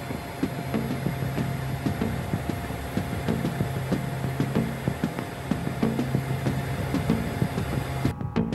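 Background music with a steady pulsing beat over a low drone, mixed with a steady rushing noise. The noise cuts off suddenly at the very end.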